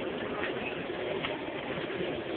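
Steady supermarket background noise: a constant low hum and hubbub from the store, with a faint click about a second and a quarter in.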